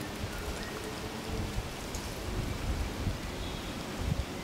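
Steady outdoor hiss with an irregular low rumble, like wind on the microphone, and a faint bird call near the end.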